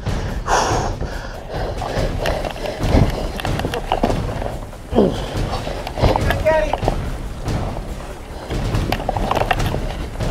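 A man's short wordless grunts and exclamations as he strains against a hooked fish, over a steady low rumble of wind and water.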